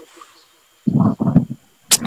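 A man's voice over a video call: a short pause, then a few brief muffled syllables and a sharp hiss leading into louder speech.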